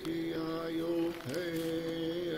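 A man's voice humming long, steady held notes, with a brief dip and slide in pitch about a second and a half in.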